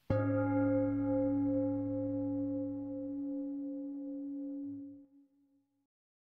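A meditation chime struck once, ringing with several steady tones that die away over about five seconds. It marks the start of the guided journey.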